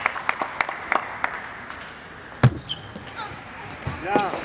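Table tennis ball bouncing, a run of light clicks about three a second, then sparser clicks and one heavier thump about two and a half seconds in.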